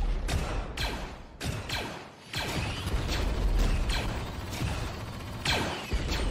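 Sci-fi blaster-fire sound effects: a string of shots, several with a falling 'pew' sweep, over a steady low rumble.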